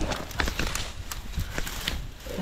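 Irregular rustling and crackling of grass and brush as hands dig through it to grab a snake, a quick uneven run of small snaps.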